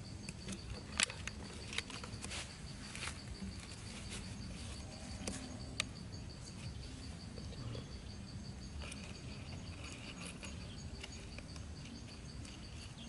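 Light clicks and taps from a plastic water bottle and thin wooden sticks being handled, several in the first half, over a steady faint high-pitched insect drone.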